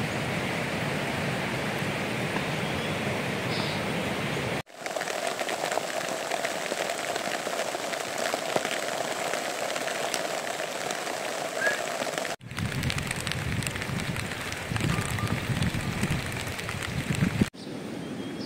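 Steady rain falling, an even hiss that breaks off abruptly a few times where the sound cuts from one shot to the next.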